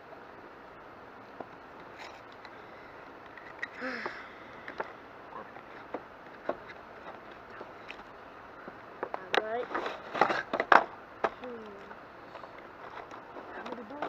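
A cardboard toy box and its plastic packaging being handled and opened, giving scattered short rustles and clicks. The loudest cluster of crackles comes about nine to eleven seconds in, mixed with brief voice sounds.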